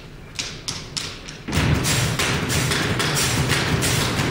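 Drumsticks striking a household refrigerator as a percussion instrument: a few separate taps, then about a second and a half in a loud, fast drumming rhythm starts on the fridge's body and doors.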